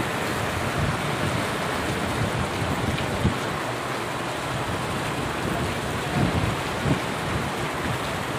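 Heavy rain pouring steadily onto a flooded street, a dense even hiss, with a couple of brief low thumps.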